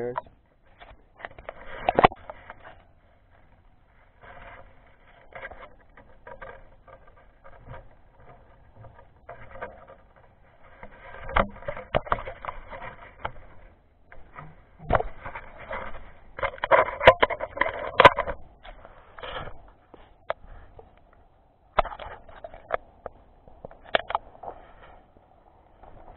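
Handling noise of gear rubbing, scraping and knocking right against an action camera's microphone: irregular bursts of rustling with sharp clicks, loudest and busiest about halfway through.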